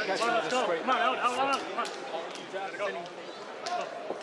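A man talking close to a fighter in his corner between rounds, coaching him in words too unclear to make out, with a few sharp clicks.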